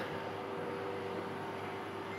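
Air conditioning running: a steady hiss with a faint, even hum held through it.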